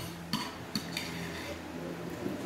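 Metal spoon clinking against ceramic bowls at a meal table: three sharp clinks in the first second or so, over a faint steady hum.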